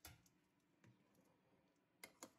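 Near silence, with a couple of faint, short clicks.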